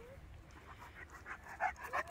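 Great Dane mix dog panting quickly and faintly, with a short high whine at the start and another at the end.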